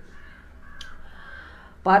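Faint harsh bird calls in the background during a pause in a man's speech; his voice comes back just before the end.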